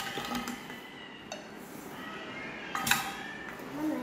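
A metal whisk scraping and clinking against a glass measuring jug as sugar is stirred into melted butter and cocoa powder, with a sharper clink about three seconds in.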